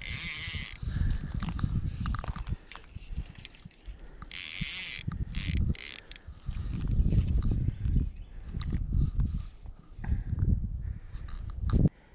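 Fly reel's click-and-pawl drag buzzing as line is pulled off it, in two short bursts, one at the start and one about four seconds in, with a few single clicks after the second. A low wind rumble on the microphone runs underneath.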